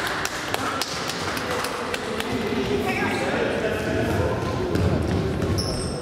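Indoor futsal play in a reverberant sports hall: a ball is kicked and bounced and feet thud on the wooden floor in sharp knocks throughout, while children's voices shout indistinctly. Short high squeaks come near the end.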